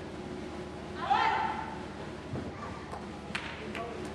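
A single short, loud shout about a second in, rising then holding its pitch, over a steady murmur; a few sharp taps follow near the end.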